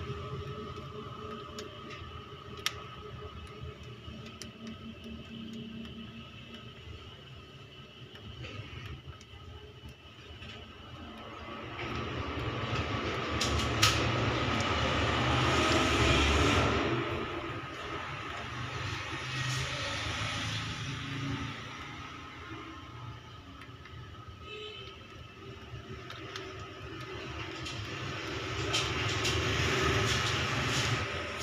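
A steady low rumble, louder for several seconds in the middle, with a few sharp clicks.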